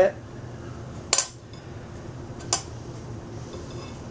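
A table knife clinking against a ceramic plate twice while a sandwich is being made: a sharp clink about a second in and a lighter one about two and a half seconds in.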